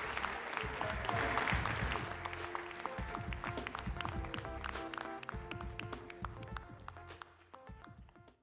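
Theatre audience applauding over closing music with held notes; both fade out gradually towards the end.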